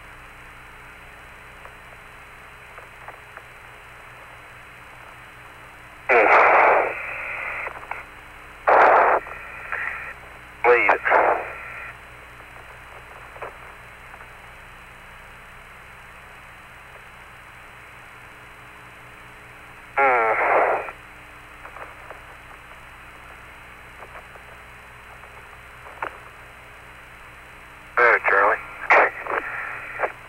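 Apollo lunar-surface radio downlink: a steady hiss with faint steady tones, broken by short, clipped bursts of voice transmission about six, nine, eleven and twenty seconds in and again near the end.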